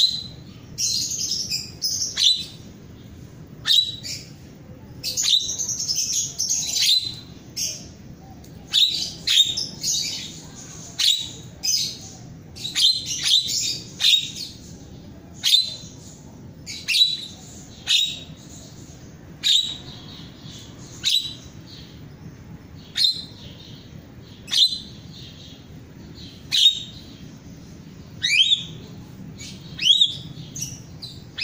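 Caged jalak (myna) calling: loud, sharp, high notes repeated every second or two, with runs of rapid chattering phrases in the first half.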